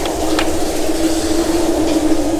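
Steady mechanical hum with one slightly wavering tone, with a couple of light clicks near the start as the metal-hung colour swatch cards on the rack are handled.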